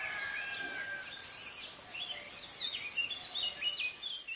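Small birds chirping in quick, short high calls over a steady background hiss, the chirps growing busier in the second half.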